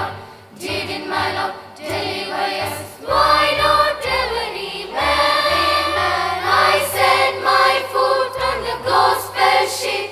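Children's choir singing in parts with electronic keyboard accompaniment. Deep sustained bass notes join about three seconds in and the singing grows fuller and louder.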